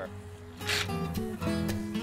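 Background music with steady held notes, with a short hiss about two-thirds of a second in.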